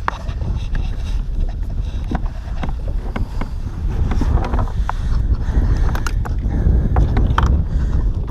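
Wind buffeting the camera microphone as a steady low rumble, with scattered light clicks and knocks from handling gear aboard the kayak.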